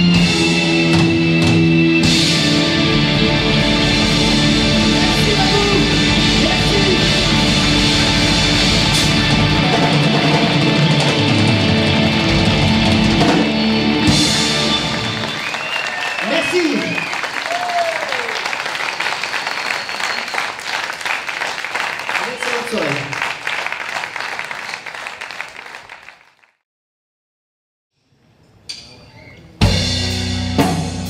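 A live rock band with drum kit, guitar and keyboards plays the last bars of a number. About halfway through the band stops and audience applause and cheering, with a few whoops, takes over and fades away. After a short silence, drums and band start again near the end.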